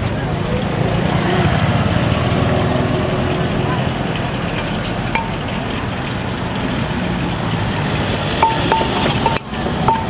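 Roadside street noise of passing traffic and voices; near the end a wooden pestle starts pounding in a clay som tum mortar, short pitched knocks about three a second.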